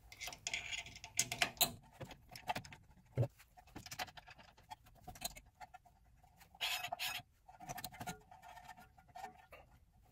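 Light, irregular metallic clicks and scrapes as 13 mm brake caliper bolts are handled and fitted into the caliper by hand.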